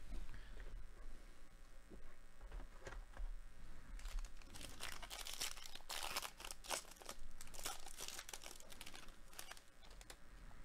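The foil wrapper of a trading-card pack being torn open and crinkled by hand. The crackling is sparse at first and grows dense from about four seconds in until near the end.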